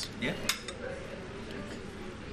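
A metal fork clinks against a china plate about half a second in, with a smaller clink just after, as it cuts into a slice of cake.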